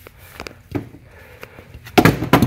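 Faint handling noise of car jumper cables: a few light clicks and rustles as a clamp is moved about, with a sharper click at the very end.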